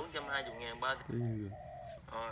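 A dove cooing, mixed with a man's voice murmuring briefly.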